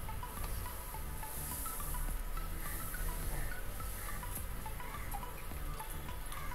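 Soft background music of scattered, chime-like single notes over a low steady hum.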